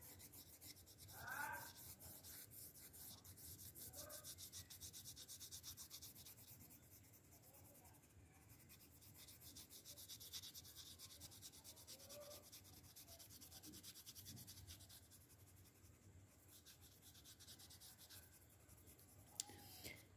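Faint, rapid strokes of a wax crayon rubbing on paper while shading, coming in spells with near-silent gaps. A brief faint sound about a second in.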